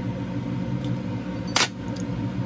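Fume hood fan running with a steady hum; about one and a half seconds in, a single short sharp click as the bottle's stopper is worked loose.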